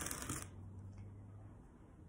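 A ceramic flowerpot slid across a tabletop: a brief soft scraping that stops about half a second in.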